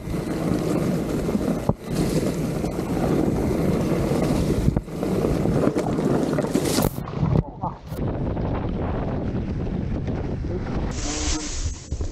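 Wind noise on an action camera's microphone and tyres rattling over a dry, rocky dirt trail during a fast mountain-bike descent, with a few sharp knocks; near the end the rider crashes.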